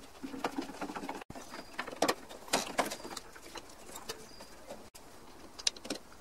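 Metal hand tools clicking and tapping against a VW air-cooled engine's tinware as screws are driven in, in a string of short knocks, with a bird calling in the background.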